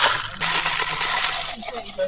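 A noisy slurp of iced coffee drawn through a straw from a plastic cup, with a faint crackle of ice, lasting about a second.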